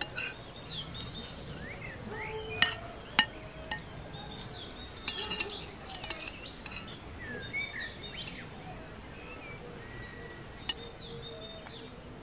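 Songbirds calling and singing throughout, with a few sharp clinks of metal cutlery against ceramic plates; the loudest two clinks come close together about three seconds in.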